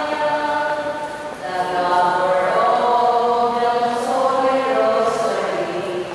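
Voices singing a slow church hymn in long, held notes, with brief breaks between phrases.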